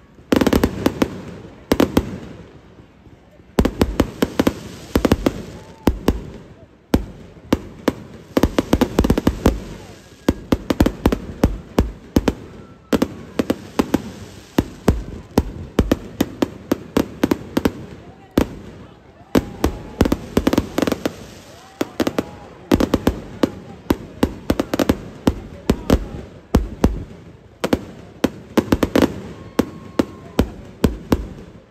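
Aerial fireworks going off in continuous barrages, rapid sharp bangs and crackles many times a second, with a few brief breaks.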